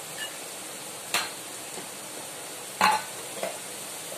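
Onion-tomato masala frying in oil in a steel kadai, a steady sizzle, with two sharp metal clinks from utensils, one about a second in and a louder one near the end.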